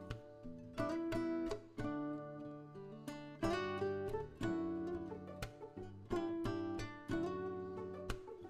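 Background music: plucked guitar notes, each starting sharply and ringing on, about one or two notes a second.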